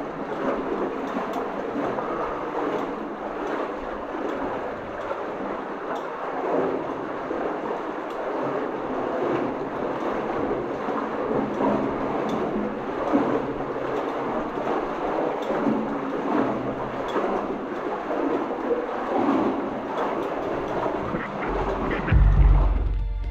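Water sloshing and splashing as people wade knee-deep through a flooded mine tunnel, a continuous churning with small irregular surges from each stride.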